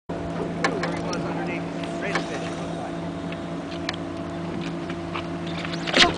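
A boat motor running steadily at one constant pitch, with a few sharp clicks over it.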